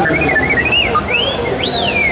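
Electronic droid chirps from a Star Wars droid replica: a quick string of short warbling whistles, then two longer, higher rising-and-falling sweeps in the second half.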